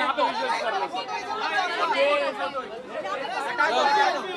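Several people talking over one another at once: overlapping chatter of mixed voices, with no other sound standing out.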